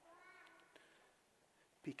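Near silence: quiet room tone, with a faint high-pitched call lasting about half a second near the start. A man's voice begins a word right at the end.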